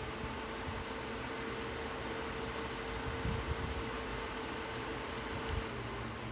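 A 12 V four-wire PC cooling fan running on 12 V: a steady airy whir with a faint steady hum that stops shortly before the end.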